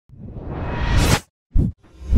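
Logo-intro sound effect: a rising whoosh that swells for about a second and cuts off sharply, followed by a short, deep hit.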